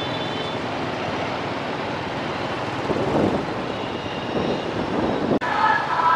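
City street traffic dominated by motorbikes: a steady wash of engine and tyre noise, with vehicles passing closer and louder about three and four and a half seconds in. Near the end the sound cuts off abruptly.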